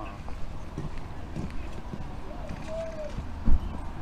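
Footsteps on a pavement over a steady low street rumble, with one much louder knock about three and a half seconds in.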